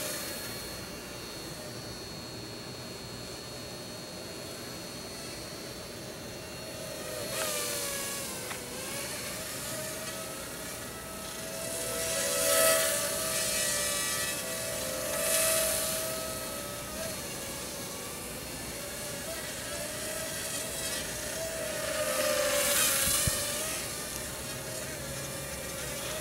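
Cheerson CX-30 quadcopter's motors and propellers whining steadily in flight, the pitch shifting up and down with the throttle. The sound swells louder four times.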